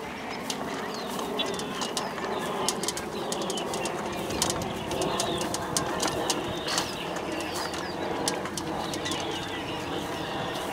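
Red Radio Flyer toy wagon rolling along a dirt path, its wheels and body rattling with many small irregular clicks, over a steady murmur of background voices.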